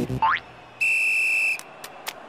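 Cartoon sound effects: a quick upward-sliding boing, then a steady high whistle tone held for under a second.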